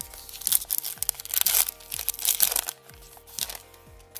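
Foil Pokémon booster pack wrapper being torn open and crinkled in the hands, in several loud bursts over about three and a half seconds. Steady background music plays underneath.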